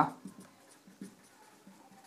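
Marker pen writing on a whiteboard: faint, short scratching strokes as words are written.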